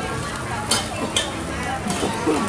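Food sizzling as it fries at a market food stall, a steady hiss under background chatter, with two short sharp clicks partway through.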